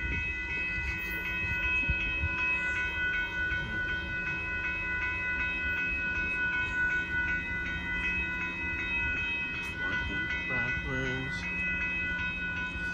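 Railroad grade-crossing warning bell ringing in a rapid, even rhythm, with a low steady rumble underneath.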